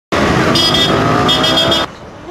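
Motor vehicle engines running, with two spells of a high, rapidly pulsing tone like a horn being tooted. The sound cuts off abruptly just before the end.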